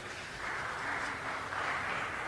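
Arena audience applauding, a steady patter of clapping that swells about half a second in and holds.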